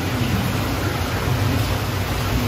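Steady rushing noise with a low hum from the water circulating through a giant salamander's display tank.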